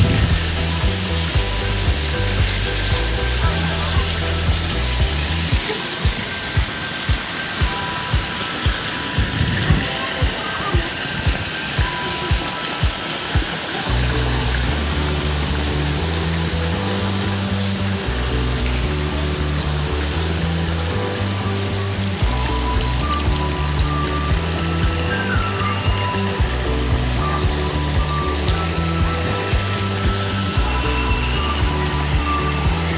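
Background music with a steady beat and a stepping bass line; the bass drops out for several seconds in the first half, leaving only the beat, then returns.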